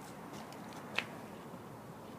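Large 32-inch, 50-pound gyro wheel spinning unpowered on its pivot, a steady low whir, with a single sharp click about a second in.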